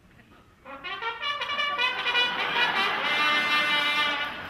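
Trumpet played live into a stage microphone. It comes in under a second in after a brief hush and ends on a longer, steadier note.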